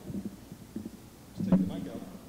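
Handling noise from a microphone being adjusted on its floor stand: low rumbles, with a sharp knock about one and a half seconds in.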